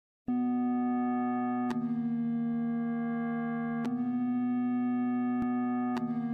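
Opening of a song: sustained electronic keyboard chords, several notes held steadily together. The chord changes a couple of times, each change marked by a small click.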